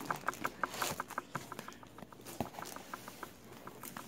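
A quick run of light clicks and taps from handling shrink-wrapped trading-card boxes in their mailer. The clicks come fast at first, then thin out and fade, with one sharper tap about halfway through.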